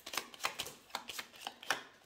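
A small deck of cards being shuffled and sorted by hand: an irregular run of light card flicks and taps, about four or five a second.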